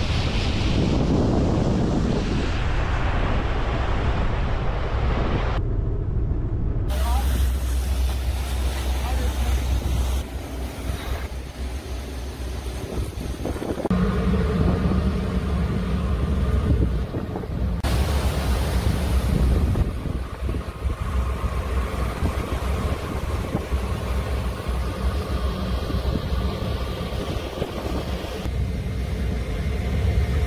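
Fishing vessel under way: a low engine drone with water rushing along the hull and wind on the microphone, the mix changing abruptly several times.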